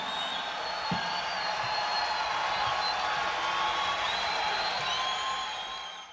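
Concert audience cheering and applauding, with a few long high whistles, fading out near the end.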